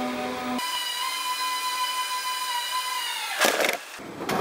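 Steady whine of a work lift's electric drive motor creeping along at a very slow pace. About half a second in, the whine jumps about two octaves higher and loses its low end as the footage is sped up, and it holds steady until a short rush of noise near the end.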